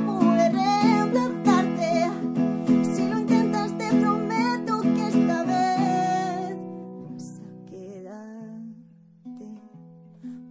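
A woman sings a ballad melody over a steadily strummed acoustic guitar. About six seconds in the strumming stops and the last chord rings and fades while her voice holds a few notes. Soft single plucked guitar notes start near the end.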